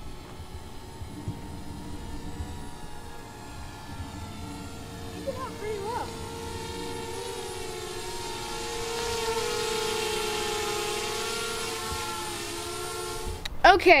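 Small quadcopter drone (DJI Spark) flying in follow mode, its propellers giving a steady pitched hum that swells as it passes close, loudest about ten seconds in, then fades.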